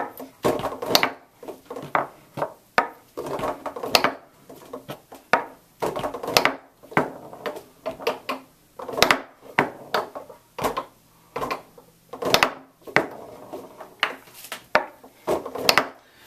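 Tornado foosball table in play: the ball is struck by the plastic foosmen and rolls and rattles across the playfield, with the rods clacking. It sounds as a string of sharp knocks, about one or two a second, as the ball is passed and hit over and over.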